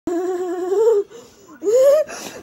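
A person's high-pitched, drawn-out laughter: a long wavering squeal, a brief break about a second in, then a second squeal rising in pitch.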